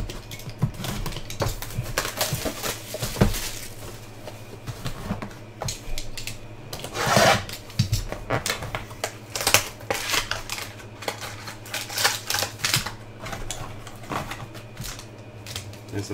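A trading-card box and its pack being opened by hand and the cards handled: cardboard and wrapper crackling and rustling in a quick run of small clicks, with a louder burst about seven seconds in.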